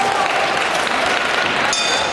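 Audience applauding, a dense, steady clapping.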